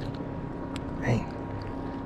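A steady low hum from a small motor on a fishing boat, with a few faint ticks of the line and fish being handled. A short exclamation comes about a second in.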